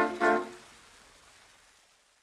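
A 1927 dance-band recording of a fox trot ends on two short final chords. Only a faint hiss remains, fading away.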